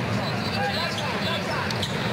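Basketball dribbled on a hardwood arena court under a steady crowd murmur, with a few short sharp clicks near the end.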